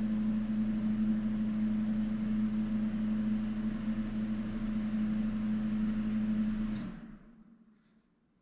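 A machine's steady hum, like a small motor or fan running, that stops about seven seconds in with a click and dies away within half a second.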